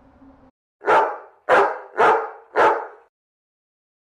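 A dog barking four times in quick succession, about half a second between barks.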